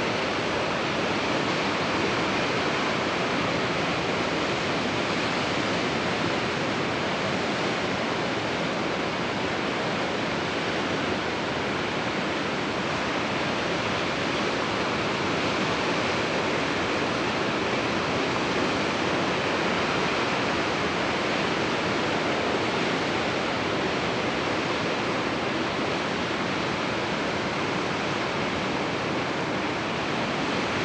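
Ocean surf washing against a rocky shore: a steady, unbroken wash of noise with no distinct wave crashes.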